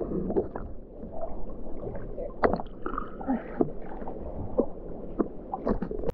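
Choppy sea water sloshing and gurgling around a waterproof camera riding at the surface, with frequent small splashes and pops as waves wash over the housing.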